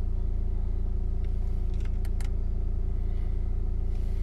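Audi A4 2.0 TDI diesel engine idling steadily, a low rumble heard from inside the cabin. A few light clicks of dashboard buttons being pressed come in the middle.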